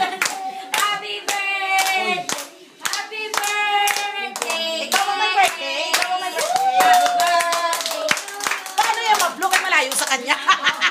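A small group singing a birthday song, with hands clapping along in time.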